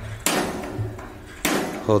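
Two knocks about a second apart as a hand works the control knob on top of a propane wall heater's metal cabinet.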